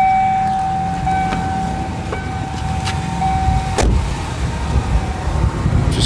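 1994 Ford Ranger's 4.0-litre V6 idling, with a steady electronic warning tone sounding from the cab. About four seconds in, the tone cuts off with a single knock of the truck door shutting.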